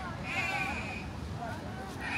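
Passers-by talking: a high, wavering voice about half a second in and a shorter one near the middle, over a steady low rumble.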